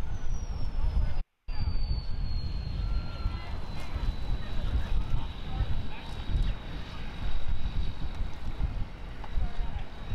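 Pickup truck engine running hard while its tires spin on the wet boat ramp under the load of a boat and trailer, a loud, rough, low rumble; the narrator's word is burning tires. The sound cuts out completely for a moment a little over a second in.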